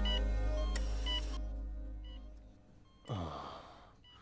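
Background music fades away over the first two and a half seconds, with short faint high beeps from a bedside patient monitor. About three seconds in comes the loudest sound: a sleeping man's heavy snoring exhale, falling in pitch.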